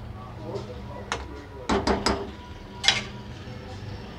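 A metal slotted spoon stirring potatoes, peas and minced meat in a kadai, clinking sharply against the pan about five times, mostly between one and three seconds in.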